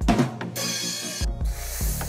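A drum kit played in a short fill: drum hits and two cymbal crashes, the comic 'ba dum tss' punchline sting.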